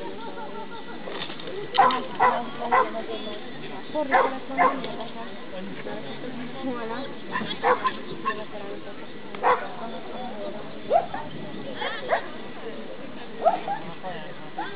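A dog barking repeatedly in short, sharp barks, some coming in quick twos and threes, over a steady murmur of voices.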